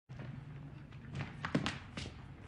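A few soft knocks and thuds, the loudest about one and a half seconds in, over quiet room tone.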